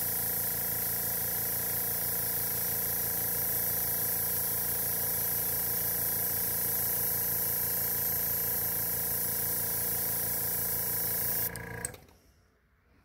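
Iwata airbrush spraying pearl lime green paint in one long steady hiss, cutting off about half a second before the end, with a steady hum underneath.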